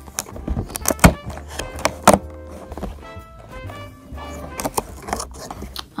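Background music plays while a cardboard advent calendar door is pushed in and pried open, with several sharp knocks and taps of the cardboard, the loudest about one and two seconds in.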